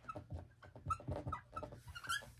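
Dry-erase marker squeaking and scratching across a whiteboard as words are written, in a quick irregular run of short strokes.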